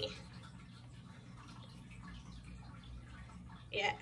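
Quiet room with a low steady hum and faint soft scratching as a small paintbrush dabs fabric paint onto a canvas tag. A brief spoken word near the end.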